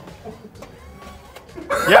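Low background murmur, then about a second and a half in a loud, excited shout of "yes".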